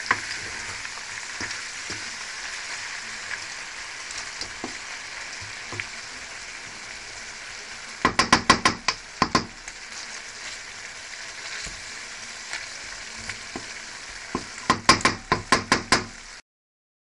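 Sliced potatoes sizzling steadily in hot oil in a frying pan. Two quick runs of sharp knocks come from a wooden spatula stirring the potatoes against the pan, one about halfway through and one near the end.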